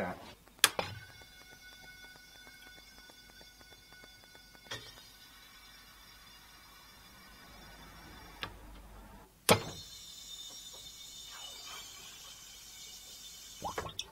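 Faint steady hum broken by a few sharp clicks, about a second in, near five seconds and near ten seconds: a gas solenoid valve switching the gas feed on and off during flow-rate runs.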